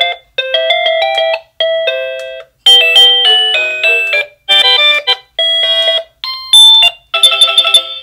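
SadoTech RingPoint driveway alert receiver stepping through its chime tones: a short electronic doorbell melody plays, cuts off abruptly after about a second, and a different one starts, about seven tunes in a row as its music select button is pressed again and again.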